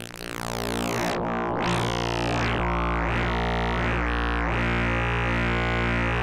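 Eurorack modular synthesizer drone: a sawtooth wave through the Flamingo harmonic interpolation module, a filter and a wave folder, holding a low steady pitch. Its bright upper overtones sweep up and down repeatedly in a wah-wah-like way as the filter emphasizes one part of the spectrum after another.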